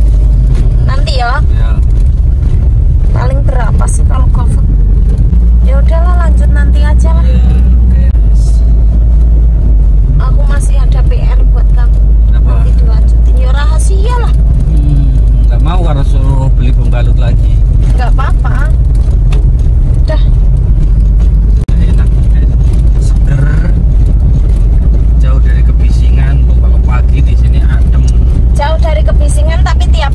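Steady loud rumble of a car's engine and road noise heard inside the cabin while driving. Voices talk over it now and then.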